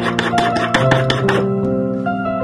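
Hand file rasping across a silver bar in quick, rapid strokes, stopping about a second and a half in, with background music under it.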